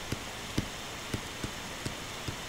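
Stylus tip tapping and dragging on a tablet screen while writing: a few light ticks over a steady hiss.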